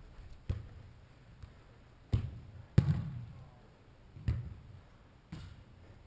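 Soccer ball being kicked in a large indoor hall: five dull thuds at uneven intervals, each followed by a short echo, the loudest about three seconds in.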